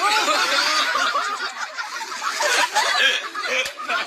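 Several voices laughing and calling out at once, overlapping throughout.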